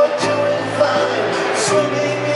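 Rock band playing live, recorded from far back in the stadium crowd: held chords with drums and cymbals between sung lines.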